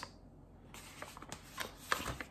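Light taps and scrapes of a tablespoon scooping unsweetened chocolate powder and tipping it into a blender jar: a few faint clicks scattered through a quiet stretch.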